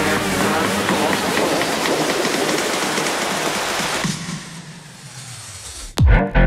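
Car noise, engines and tyres, with voices mixed in: a loud, even rush that falls away about four seconds in.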